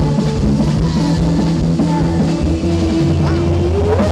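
Live rock band playing with electric bass and drum kit, with a long held note that slides upward near the end.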